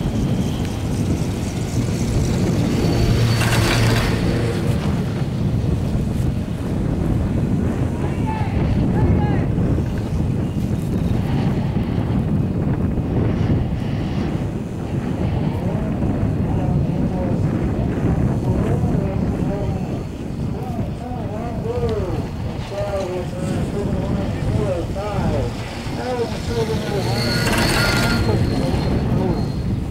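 Steady wind rumbling on the microphone of a moving chairlift, with a louder clattering rumble and hum about three and a half seconds in, as the chair passes a lift tower's sheave wheels, and another near the end.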